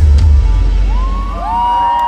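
A live band's last notes ringing out, the heavy bass fading away over the first second and a half, as a large crowd breaks into cheering and high whoops about a second in.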